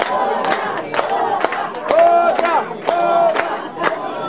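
Audience shouting and cheering, with hand claps at an uneven pace of about three a second.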